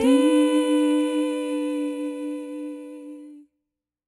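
Closing note of a children's song: a voice humming one long held note that slowly fades and stops about three and a half seconds in, followed by silence.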